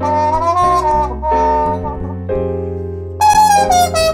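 Jazz trumpet playing a melodic solo line over piano chords and bass. A louder, brighter trumpet phrase begins about three seconds in and falls in pitch.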